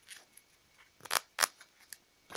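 Yu-Gi-Oh! trading cards being handled and set down: two short crisp snaps about a quarter of a second apart a little past the middle, and a fainter one near the end.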